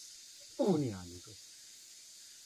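A man's short voiced sound, falling in pitch, about half a second in. A steady high-pitched hiss runs underneath.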